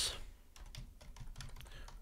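Typing on a computer keyboard: a quick, uneven run of quiet key clicks as a sentence is typed.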